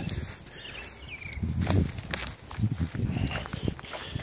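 Footsteps crunching through dry fallen leaf litter, a few irregular steps with crackling leaves.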